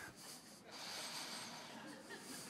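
Faint breathy human sound over quiet room noise, swelling slightly about a second in.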